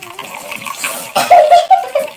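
Tea being poured from a glass teapot into a glass cup, a steady trickle; about a second in, a loud high-pitched voice cries out a drawn-out "a" over it.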